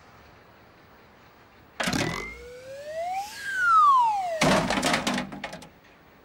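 Cartoon sound effects for a plank seesaw launching a bucket. A clattering knock comes first, then a whistle gliding up and a louder whistle gliding down, ending in a long crashing clatter.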